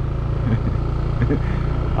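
Motorcycle engine running at a steady low speed while the bike is ridden, heard from the rider's seat with wind and road noise.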